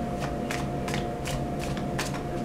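A deck of tarot cards being shuffled by hand, a string of short crisp card strokes about three a second.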